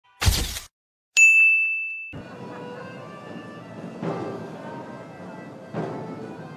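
Logo-intro sound effect: a short whoosh, then after a brief silence a single bright ding that rings for about a second. From about two seconds in, a steady background of a crowd in a reverberant hall, with two soft thuds.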